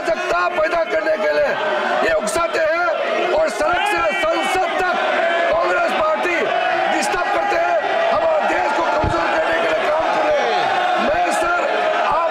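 A man speaking heatedly over several other voices talking at once, a continuous din of overlapping speech in a large chamber.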